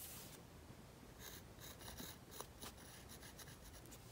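Near silence with faint, short scratchy strokes: a fine paintbrush drawing black detail lines on a painted wooden earring disc.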